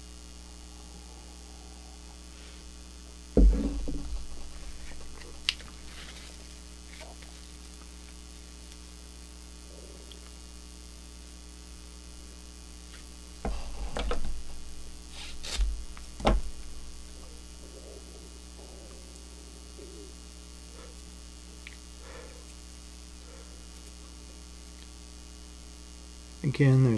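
Steady electrical mains hum, broken by a few knocks and handling bumps. The loudest knock comes about three and a half seconds in, and a cluster of bumps follows about halfway through.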